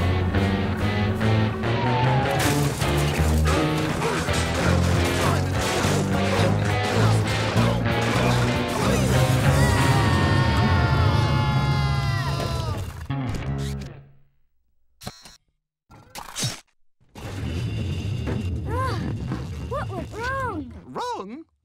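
Cartoon soundtrack of dramatic music and spaceship landing sound effects, with a series of falling whistling tones that build to a crash. It cuts off suddenly about fourteen seconds in, followed by a few short knocks and then fresh effects near the end.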